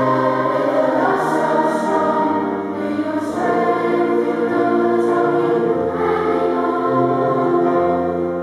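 A boys' choir singing together, holding notes, with the crisp consonants of the words coming through.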